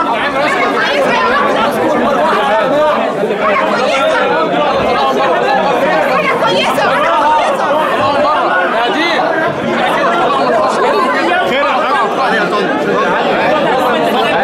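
A crowd chatting: many voices talking over one another at once, steady and loud, with no single speaker standing out.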